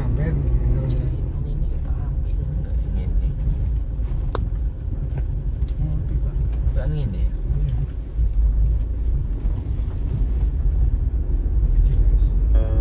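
Low, steady rumble of a vehicle's engine and tyres while it drives along a patched asphalt road, with a single sharp click about four seconds in.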